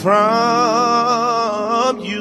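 A man singing a gospel solo through a microphone, holding one long note with a slight vibrato that breaks off just before the end.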